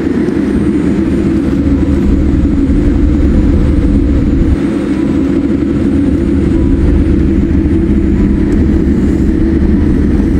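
Steady low rumble inside the cabin of an Air India Boeing 787 Dreamliner as it taxis: engine noise and wheel rumble, loud throughout.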